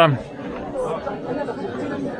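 Background chatter of people on a busy pedestrian street, a steady mix of faint voices, with the tail of a spoken greeting at the very start.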